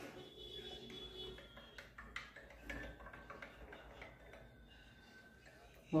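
Plastic spoon stirring instant coffee into a hot drink in a glass mug, faint and soft, with a few light taps against the glass.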